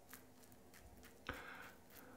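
Mostly near silence, with faint scraping of a stainless steel adjustable double-edge safety razor (Rex Supply Ambassador) stroking through lathered stubble on the chin, one short, louder stroke about a second and a quarter in.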